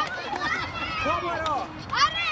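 Several people's voices talking and calling out over one another, some of them high-pitched.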